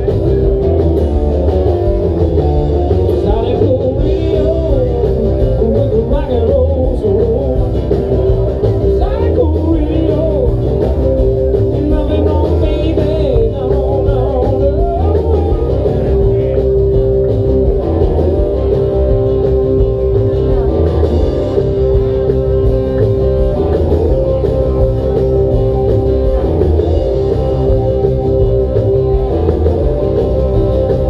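A band playing live, with guitar and singing, heard from among the crowd in the room.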